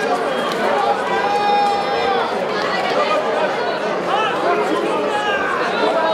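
Crowd chatter: many people talking at once, a steady babble of voices with no single speaker standing out.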